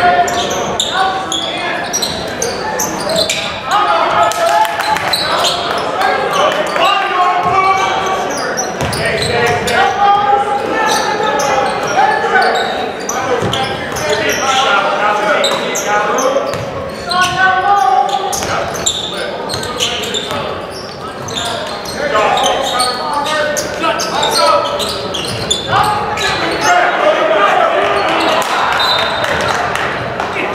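Basketball game in play in an echoing gymnasium: a basketball bouncing on the hardwood court, with crowd and player voices talking and calling out throughout.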